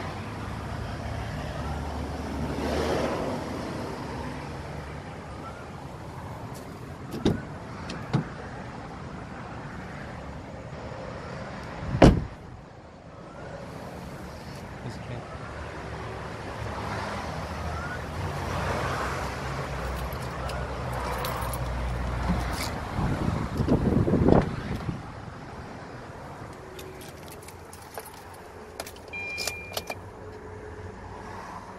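Motor vehicle running close by, its low rumble swelling twice, with a few clicks and one sharp loud knock about twelve seconds in. Near the end come small clicks and a short electronic chime as the car's instrument cluster lights up.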